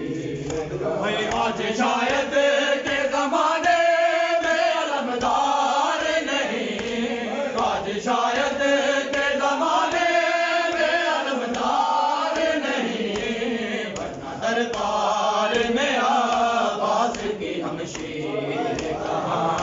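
A group of men chanting a nauha, an Urdu Shia mourning lament, together in repeated sung phrases.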